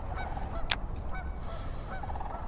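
Geese honking repeatedly, short calls several times a second, over a steady low rumble of wind on the microphone. A single sharp click comes less than a second in.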